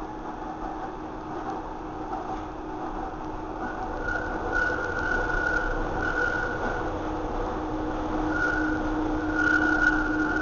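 Docklands Light Railway B07 stock train running, heard from inside the passenger carriage. It gets steadily louder, with a high tone coming and going from about four seconds in and a lower hum building near the end.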